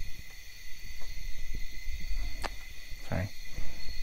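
Crickets chirring steadily in the night, over the low rumble of a vehicle driving on a mountain road in the distance.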